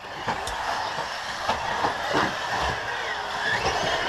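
Radio-controlled buggies racing on a dirt track: a steady mix of small motor whine and gear and tyre noise, with faint pitch glides as the throttles change and scattered small knocks.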